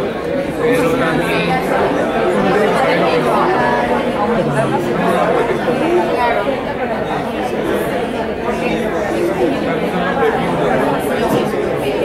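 Many people talking at once in a large room, several conversations overlapping into a steady chatter with no single voice standing out.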